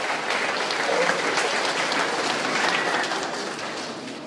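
Audience applauding, the clapping easing off near the end.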